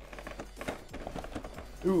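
Faint clicks and crinkles of a clear plastic box being handled and opened. A man's "Ooh" comes near the end.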